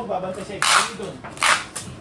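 Packing tape being pulled off a handheld tape dispenser in two short rasping strips, the second followed by a smaller one.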